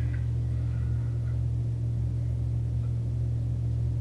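A steady low hum with no other event, a constant background drone in the recording during a pause in speech.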